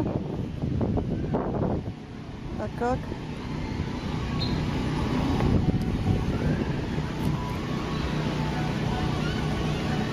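Steady low rumble and hum of riding slowly along a park path, with background voices of people in the park and a short rising call about three seconds in.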